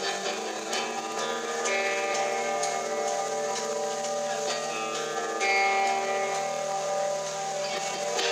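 Live band music: electric guitar playing held, ringing chords and notes, with a few scattered cymbal or drum hits.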